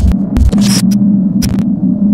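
Loud, steady low electronic hum from the end-screen logo animation's sound design, with a few short swishes and glitchy clicks timed to the graphics.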